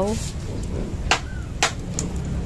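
Two sharp crackling pops about half a second apart from a wood-fired stove heating oil in a steel wok, over a steady low rumble.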